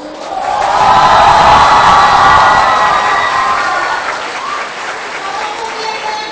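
A large crowd of students cheering and clapping in a hall, swelling quickly to loud within about a second, then gradually dying away over the next few seconds.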